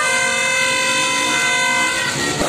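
A horn sounding one long, steady note that stops right at the end.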